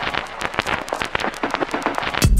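Rapid, irregular crackling clicks with no bass or beat under them: a stripped-down, static-like break in an electronic music track.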